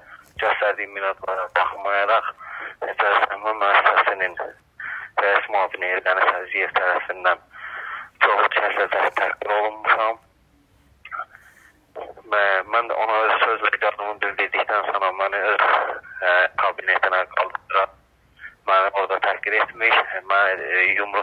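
A man speaking Azerbaijani over a telephone line, the voice thin and narrow in range, with a pause of about two seconds near the middle.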